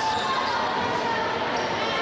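Spectators chattering in a gymnasium, with a basketball bouncing on the hardwood floor as a free throw is set up and taken.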